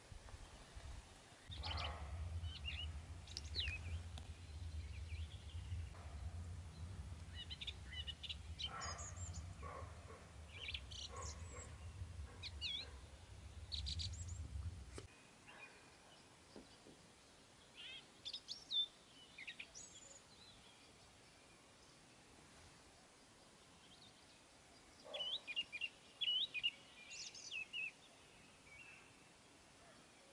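Small birds chirping over a low steady hum that cuts off suddenly about halfway through. In the quieter second half a roe deer barks: one sharp bark about two-thirds of the way in, then a cluster of barks near the end, among the bird calls. Roe deer bark like this to spook a rival.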